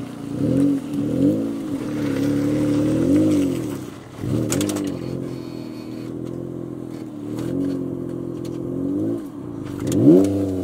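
Jeep Wrangler engine revving up and falling back in repeated short swells of throttle as it crawls up a steep rock ledge.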